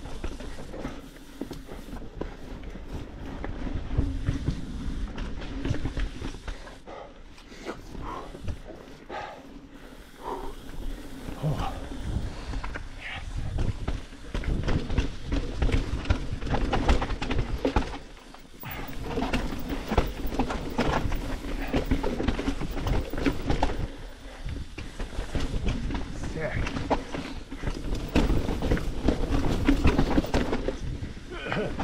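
Commencal Meta HT hardtail mountain bike ridden fast down rocky dirt singletrack: tyres rolling and crunching over dirt and rock, with constant clattering knocks from the chain and frame over the rough ground. The loudness rises and falls in surges every few seconds as the trail gets rougher.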